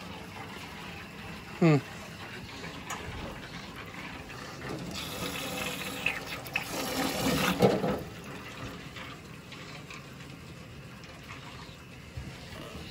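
Hot water from a boiler purge hose running into a utility sink. It grows louder and more turbulent for a few seconds in the middle as air trapped in the hydronic heating piping is purged out with the water.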